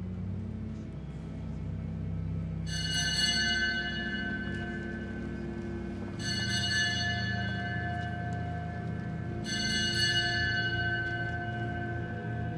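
Cathedral pipe organ playing slow held chords over a low sustained bass, with a bright, bell-like high chord sounding three times for about three seconds each.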